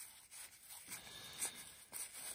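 Faint rustle of cardboard trading cards, a stack of 1982 Donruss baseball cards, sliding against each other as they are thumbed through by hand, with a few small ticks.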